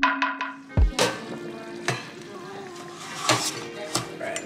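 Tap water running into a rice cooker's metal inner pot as rice is rinsed, with a few sharp knocks of the pot, the last as it is set down. Electronic background music with a couple of heavy bass beats in the first second.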